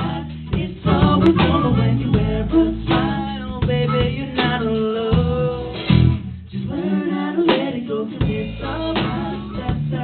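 A live band playing a song: strummed acoustic guitar and drums under a male lead vocal singing.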